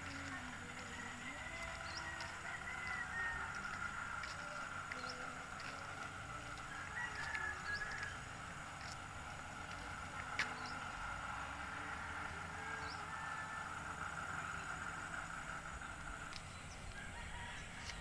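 Faint rural outdoor ambience: a steady high drone with scattered distant chicken and rooster calls, and one sharp click about ten seconds in.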